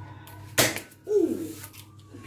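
One short, sharp rustle of baking paper as a sheet is pulled off its roll, followed by a brief falling vocal sound from a person.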